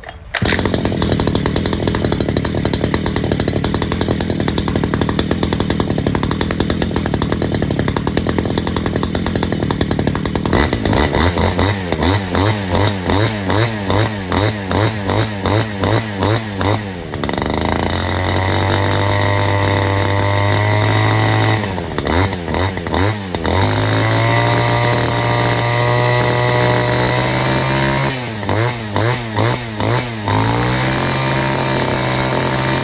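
Robin NB351 two-stroke brushcutter engine running on test. It runs steadily for about ten seconds, then is blipped in quick repeated throttle bursts about twice a second, held at high revs for a few seconds, blipped again briefly, held high again, and blipped once more near the end.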